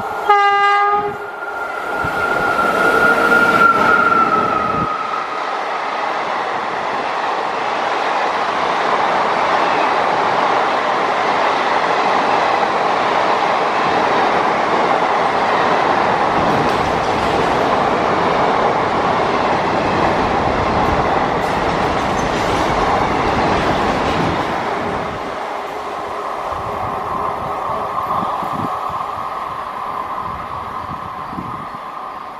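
An Indian Railways WAP-1 electric locomotive gives a short horn blast, followed by a higher tone that falls slightly over a couple of seconds. Then the passing passenger coaches make a long, steady rumble and wheel clatter on the rails, which eases as the train moves away near the end.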